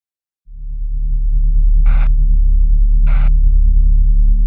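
Deep, steady electronic bass drone of a logo sting, starting about half a second in, with two short brighter hits a little over a second apart.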